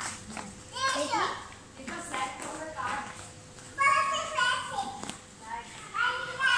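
A toddler babbling and vocalizing in high-pitched, wordless sounds, loudest about four seconds in.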